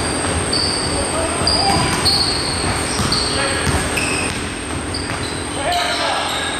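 Basketball dribbled on a hardwood gym floor, with sneakers squeaking in short, high squeals again and again as players move up and down the court.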